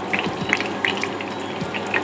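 Thick ostrich steak frying in a pan of hot oil: a steady sizzle with small crackles scattered through it.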